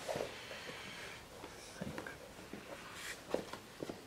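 Faint rustling and a few light taps as hands handle a pair of black suede Puma sneakers.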